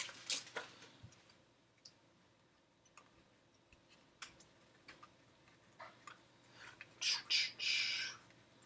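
Quiet handling of a foil trading-card pack and its cards: scattered soft clicks and rustles, then a short run of louder crinkling and rustling about a second before the end.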